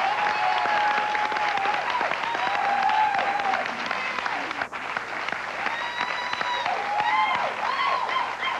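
Studio audience applauding steadily, with a few long whooping cheers rising over the clapping.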